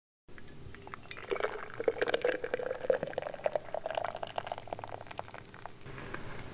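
Water pouring in a stream into an enamel mug, with spattering clicks and a ringing note that rises in pitch as the mug fills.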